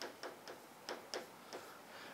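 Chalk writing on a chalkboard: a run of faint, short taps and scratches at uneven spacing, about three or four a second, as the chalk strikes and drags across the board.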